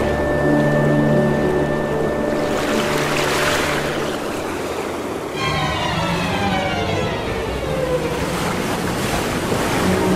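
Ride-film soundtrack: background music with a rushing, water-like swell a few seconds in, then a long falling swoop effect from about halfway as the boat moves along the water.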